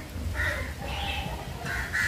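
A crow cawing outdoors, about three harsh caws spread over two seconds.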